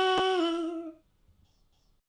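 A voice singing one long held 'la' note that ends about halfway through, followed by near silence. A brief click falls shortly into the note.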